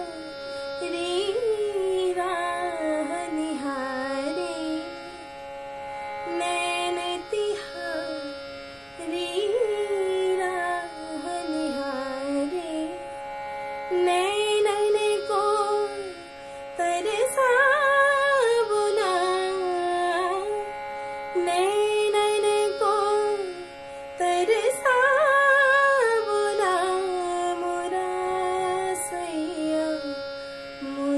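A woman sings a thumri in Raag Khamaj in long, gliding, ornamented phrases with short breaths between them, over a steady drone. From about halfway through, the phrases get louder and climb higher.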